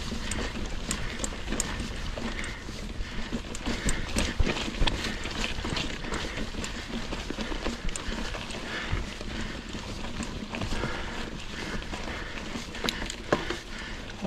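Mongoose Ledge X1 full-suspension mountain bike rolling over a rocky dirt trail: tyres crunching over stones and the bike rattling, with frequent short clicks and knocks over a steady low rumble.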